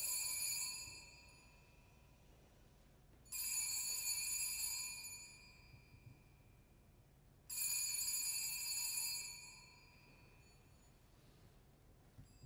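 A small altar bell rung three times, about four seconds apart, each ring clear and high and fading over about two seconds, marking the elevation of the communion cup.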